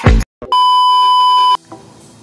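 A final hit of the intro music, a brief gap, then a single steady electronic beep about a second long that cuts off sharply.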